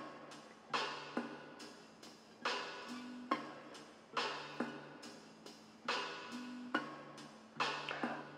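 Quiet looped synth-app music from an AudioKit patch: a drum beat with regular hits under a bass loop sent through a string resonator, its tuned low tones changing pitch as the resonator's fundamental frequency is retuned.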